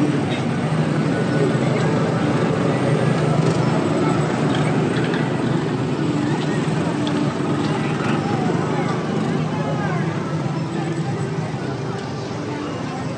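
Small gasoline engines of Tomorrowland Speedway ride cars running steadily as the cars drive around the track, with people's voices mixed in. The engine sound eases a little near the end.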